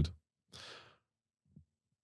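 A brief, faint breath or sigh close to a microphone about half a second in, otherwise near silence.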